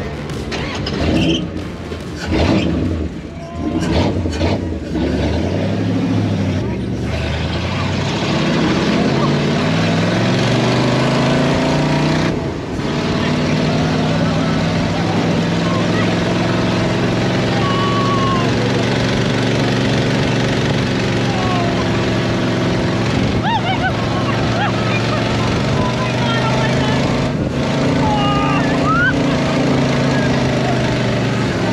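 Dune buggy engine revving up, its pitch climbing for several seconds, then running steadily at speed over a constant rush of wind and sand noise. Riders' excited shouts break through now and then.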